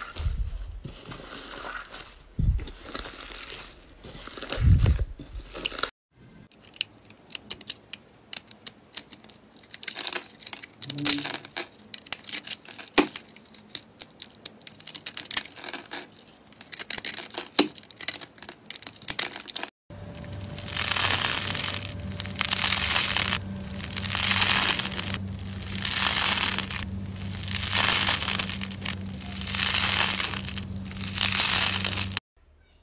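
Hands squishing and kneading thick slime, then a craft knife scoring a soft block into small cubes with many quick, crisp clicks. After that comes the crunching and tearing of a dry, porous crumbly material being pulled apart by hand, in even swells about every second and a half over a steady low hum.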